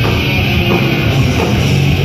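A crossover thrash band playing live and loud, with distorted electric guitars, bass and drum kit in a dense, unbroken wall of sound.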